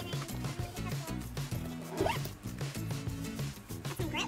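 Zipper of a tennis bag pocket being pulled, over background music with a steady repeating bass line.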